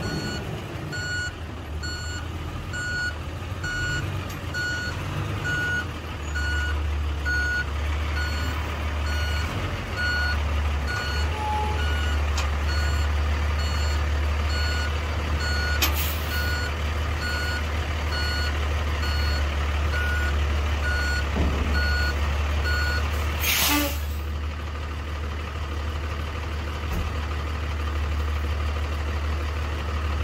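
A dump truck's reverse alarm beeping at an even pace over its idling diesel engine as the truck backs up to be hitched to a trailer. About three-quarters of the way through, the beeping stops and there is a short, loud hiss of air from the truck's brakes.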